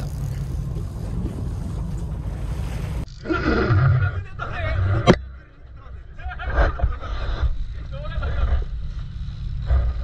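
A trolling boat's engine drones steadily under wind and water noise. About three seconds in the sound changes abruptly to gusty wind with voices in it, and a single sharp click about five seconds in.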